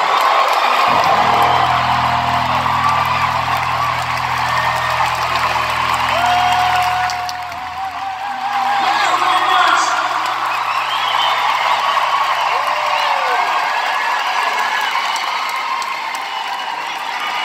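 Arena concert crowd cheering, whooping and whistling after a song, with a held low chord from the band that drops out about halfway through and a lower note fading a few seconds later.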